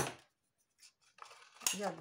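Thin PET bottle plastic being handled: a sharp crackle at the start, a quiet spell with a light click, then rustling and another crackle near the end, with a woman saying a word over it.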